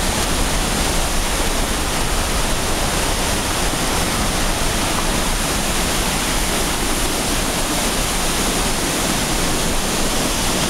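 Tunnel Falls plunging close by: a loud, steady rush of falling water that holds unchanged throughout.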